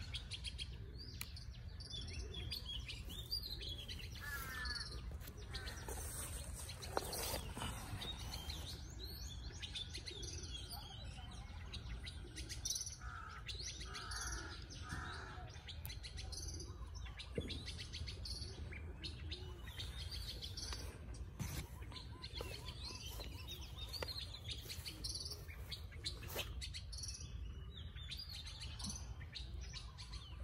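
Small birds chirping and calling, many short calls overlapping throughout, over a steady low rumble.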